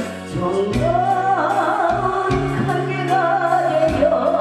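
A woman singing a Korean trot song into a microphone over backing music with bass and a regular drumbeat.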